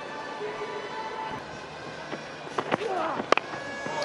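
Faint background music over steady stadium ambience, with a brief distant voice and a single sharp click a little after three seconds in.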